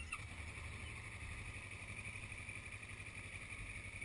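A vehicle engine running steadily at low revs, with an even low rumble throughout.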